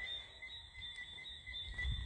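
Faint, steady high-pitched chirping of insects, the kind of night-time cricket chorus that pulses on two high notes. A low rumble of movement comes in near the end.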